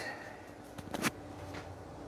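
Quiet handling noise from a phone camera moved against clothing, with a couple of sharp little knocks about a second in and a fainter one shortly after.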